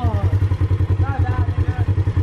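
Polaris side-by-side UTV engine idling, a steady low rumble in an even, rapid pulse, with brief voices over it.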